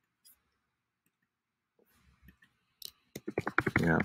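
Computer mouse clicking once, a few faint taps, then a quick run of keyboard keystrokes near the end as a search word is typed, with a man's voice starting over it.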